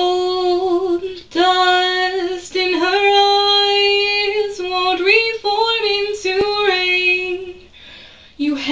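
A woman's solo voice singing a cappella, holding long sustained notes with short breaks between phrases, and trailing off near the end.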